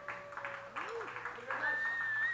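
Audience clapping and cheering, with one person whistling a long wavering note from about a second and a half in.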